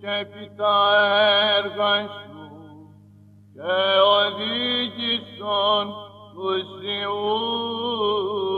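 Greek Orthodox Byzantine chant in plagal second mode: a solo male cantor sings a slow, ornamented melody over a steady low drone (the ison). About two and a half seconds in, the voice falls away for roughly a second, then comes back on a new phrase.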